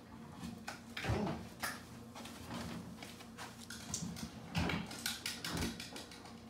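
A few knocks and rustles from a stainless steel kitchen trash can as packaging is thrown in, with the loudest knocks near the end.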